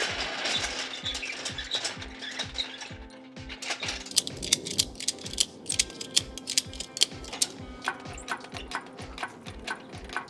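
Ratchet strap being worked, its pawl clicking in quick, uneven runs from a few seconds in. A steady low beat of background music runs underneath.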